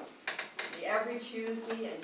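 Cutlery and dishes clinking at dinner tables, with a few sharp clinks just after the start, over people's voices.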